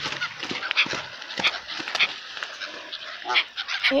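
Swans, Canada geese and gulls crowding close around a hand holding bread: scattered short bird calls among clicks and rustles.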